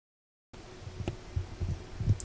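Half a second of dead silence at an edit, then quiet room tone with a faint steady hum and a few soft small knocks.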